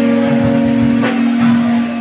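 Live rock band playing through amplifiers: an electric guitar holds a steady sustained note, with low thuds underneath and a sharp hit about a second in.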